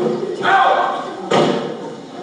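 A sharp thud on stage about a second and a half in, with voices around it.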